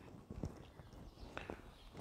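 Quiet pause: faint background noise with a few soft clicks, about half a second and a second and a half in.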